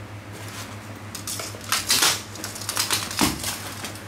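Nylon bags being handled: fabric rustling with several quick clicks and clatters of plastic buckles and zipper pulls, loudest about two seconds in, and a soft thump a little later. A steady low hum runs underneath.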